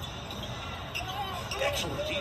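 Basketball game broadcast: a ball bouncing on the hardwood court over steady arena crowd noise, with a commentator's voice faint beneath it.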